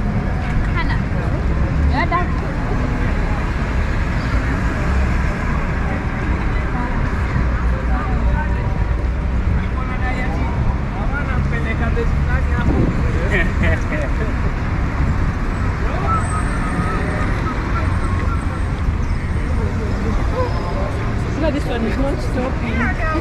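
Busy city street traffic: a steady low rumble of passing cars and buses, with scattered snatches of passers-by's voices.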